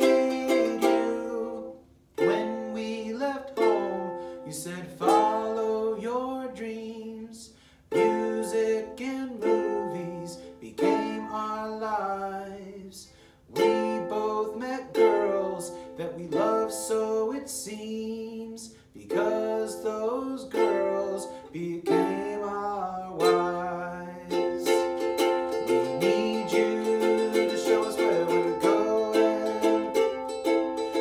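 A man singing a slow song in phrases to his own strummed ukulele. Near the end the voice stops and the ukulele strums on alone.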